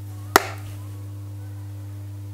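A single sharp tap about a third of a second in, as a makeup item is knocked against a hard surface, over a steady low electrical hum.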